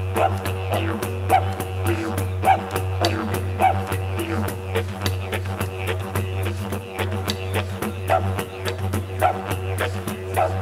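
Solo didgeridoo playing a steady low drone, shaped by a vowel-like rise and fall roughly once a second, with sharp clicks scattered through it.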